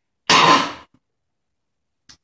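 A man's short, raspy vocal noise like a loud throat-clear, lasting about half a second.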